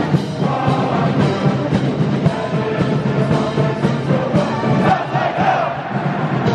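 A large crowd of cadets singing a school song along with a brass marching band and drums, the voices and horns echoing in a big stadium.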